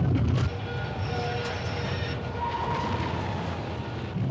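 Rumbling noise of a staged earthquake special effect on a subway-train set. A loud low rumble drops off about half a second in, leaving a steady hiss with a few faint held tones.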